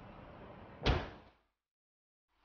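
Cinematic trailer sound effect: a steady rushing swell that ends in a single heavy impact hit a little under a second in, dying away quickly.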